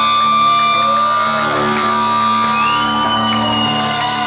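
Live rock band playing, with electric guitars ringing out held notes over a steady low drone. About two and a half seconds in, a high note slides up and holds.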